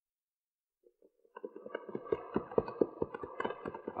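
Radio-drama sound effect of horses' hooves, a quick irregular clip-clop of riding, coming in about a second and a half in.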